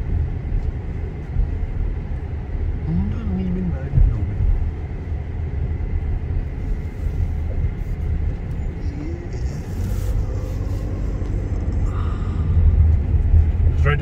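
Steady low rumble of a car's engine and tyres, heard from inside the cabin as the car drives.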